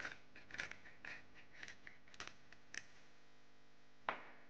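Hand-twisted spice grinder grinding salt and pepper over a raw chicken breast: a series of faint, short scratchy rasps, about two a second.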